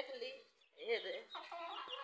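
Rooster clucking: several short calls with wavering pitch.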